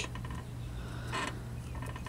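Quiet pause: a low steady hum with a faint brief rustle about a second in.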